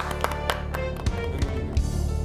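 Background music with sustained low bass notes and a few held melodic tones. The last few claps of applause fade out in the first half second.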